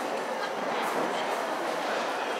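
Horse cantering on the sand footing of an indoor arena: dull hoofbeats about twice a second over a steady hiss of hall noise.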